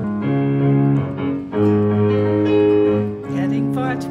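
Keyboard playing sustained chords, a new chord about every second and a half.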